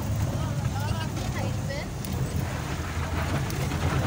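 Jeep engine running steadily at low speed over a rough, rocky track, heard from on board the jeep.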